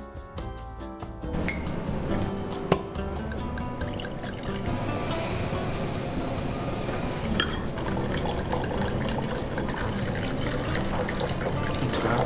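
Background music playing over red wine being poured into a wine glass. One sharp knock of glass on a table comes near three seconds in.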